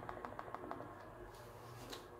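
Faint quick clicking of a tarot deck being shuffled by hand, about eight light ticks a second that fade out about a second in, leaving quiet room tone.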